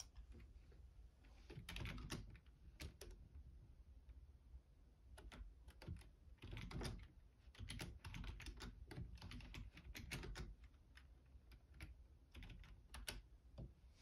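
Typing on a Logitech full-size keyboard: quiet key clicks in bursts, with a busy run in the middle and short pauses of a second or two between runs.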